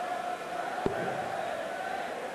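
A steel-tip dart thudding into a bristle dartboard once, about a second in, over the steady murmur of a large arena crowd.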